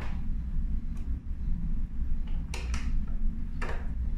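A few short clicks and scrapes of a screwdriver being picked up off a wooden table and fitted to a small battery-cover screw on a door lock handle, over a steady low hum.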